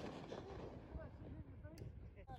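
The rumble of an aerial firework shell burst fading out, then low-level quiet with faint distant voices and a single light click about three-quarters of the way through.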